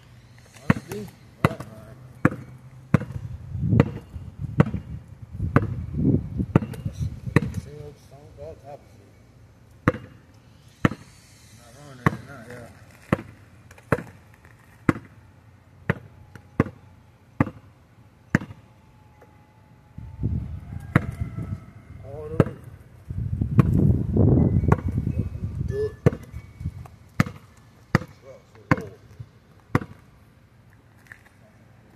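A basketball dribbled on a packed dirt and gravel driveway, bouncing steadily about twice a second. A low rumble swells under the bounces twice.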